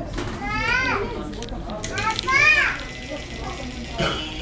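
Two high-pitched shouts from a child, each rising then falling in pitch, the second one the louder, over a background murmur of voices.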